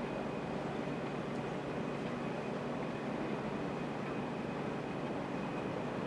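Steady background noise, an even hiss and hum with a faint high whine running through it and no distinct sounds.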